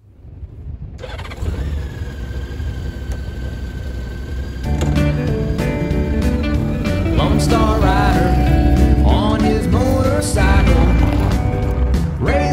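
A Honda Gold Wing motorcycle's flat-six engine fades in and runs for about four seconds. Then a country-style theme song with a beat and singing comes in and carries on.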